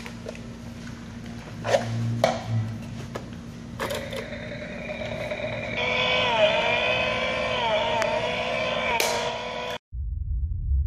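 Small electric chainsaw run in short pulls of the trigger: a motor whine that holds its pitch, then repeatedly dips and climbs back as the trigger is eased and squeezed, cutting off suddenly near the end. Handling clicks and knocks come before it.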